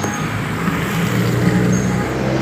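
Road traffic: a motor vehicle passing on the road alongside, a steady low engine hum over tyre and road noise.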